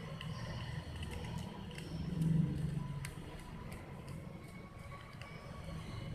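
Faint clicks and scrapes of a screwdriver tightening the terminal screws of a plastic electrical switch while it is handled. Under them runs a low rumble that swells about two seconds in.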